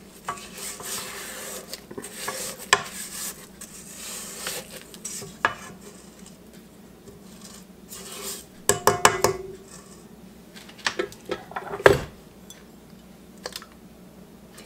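A spatula scraping creamed butter and sugar off a stainless steel stand-mixer bowl and its flat beater, with soft scrapes and light clicks and knocks against the metal. There is a cluster of knocks about nine seconds in and a louder knock about twelve seconds in.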